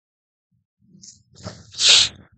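A man sneezing once: a short build-up of breathy noise, then a loud, sudden burst near the end.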